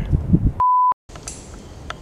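A short electronic bleep: one steady, pure, fairly high tone lasting about a third of a second, set in a brief dead silence. Before it there is a low outdoor rumble, and after it faint outdoor ambience.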